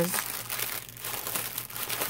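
Clear plastic bag of diamond-painting drill packets being handled and pulled open: a continuous run of plastic crinkling and rustling with many small crackles.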